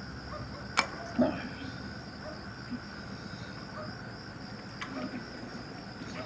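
Crickets chirring steadily, with a sharp click just under a second in and a dull knock just after.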